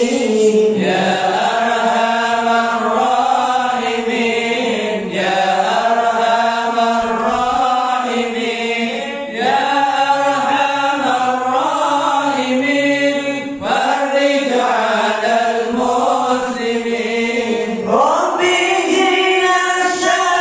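A group of men chanting Islamic devotional verses (dzikir) together into microphones, with no instruments. The chant moves in long, drawn-out lines, a new phrase starting about every four seconds.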